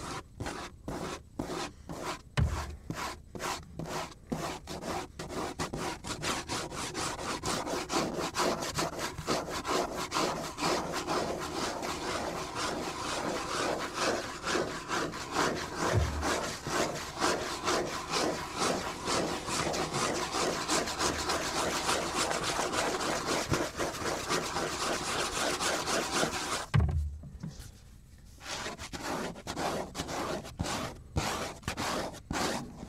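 Fingers scratching and rubbing across the surface of a cutting board. It starts as separate strokes about two to three a second, then runs into fast, continuous scratching. It pauses briefly near the end before the strokes resume, with a few low knocks from handling the board.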